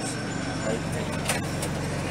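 Sightseeing bus engine running with a steady low hum, amid the noise of street traffic.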